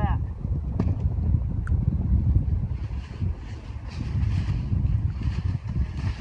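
Wind rumbling on the microphone, with faint scraping and rustling as a slab of crusted snow is broken off and the frozen outer tent flap is worked loose. The scraping gets busier in the last few seconds.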